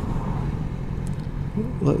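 BMW S1000XR's inline-four engine running at low road speed, a steady low rumble as the bike slows for a turn.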